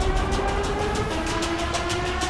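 Trailer sound design under the title card: a fast, even clattering rhythm of about ten ticks a second over a steady droning tone.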